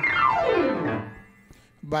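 A fast descending glissando on a piano, sweeping from the high register down to the bass in about a second and then dying away.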